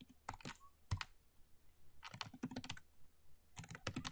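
Computer keyboard being typed on: faint, irregular key clicks, some single and some in quick runs, as a short command is entered and Enter is pressed.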